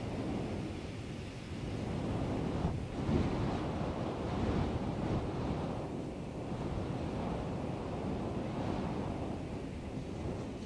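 Steady rushing, surging noise, swelling a little about three seconds in, with no distinct tones or clicks.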